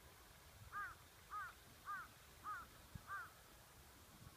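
A crow cawing five times in quick succession, a little under two caws a second, faint and distant.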